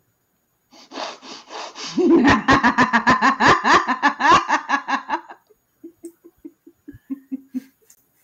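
People laughing hard, a burst of quick pulsed laughs that swells about two seconds in, then trails off into soft chuckles and breaths near the end.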